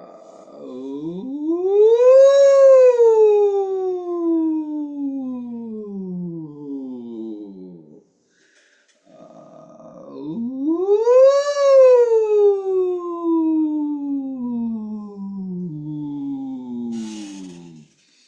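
A single singer's voice doing a vocal warm-up slide twice: each time it swoops up to a high note and then glides slowly down over several seconds.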